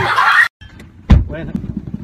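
A high-pitched scream that cuts off half a second in, then after a brief gap a loud, low thump about a second in, followed by the low rumble of a car heard from inside the cabin.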